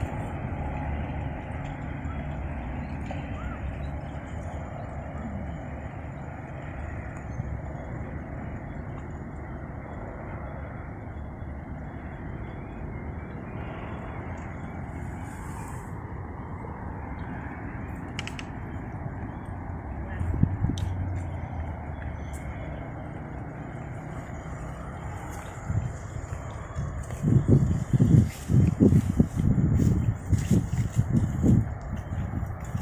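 Steady outdoor background noise: a low rumble with a soft hiss, and a few sharp clicks around the middle. Loud, irregular low thumps begin a few seconds before the end.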